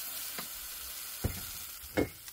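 Pea puree with bacon sizzling in its metal ration can over a heater, the food beginning to catch and burn on the bottom of the can. Two short light knocks come through, one just past halfway and one at the end.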